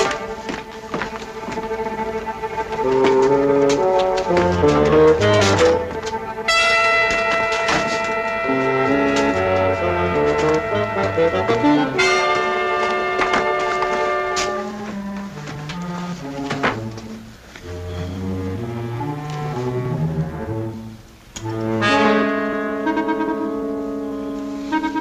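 Orchestral score music led by brass: sustained brass chords over a moving low line, with a short drop in level near the end before the brass comes back in.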